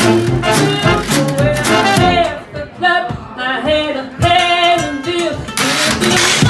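Traditional New Orleans–style jazz band playing a swing tune live, a woman singing over a strummed resonator guitar and the band's steady beat. The music dips briefly in loudness around the middle before picking up again.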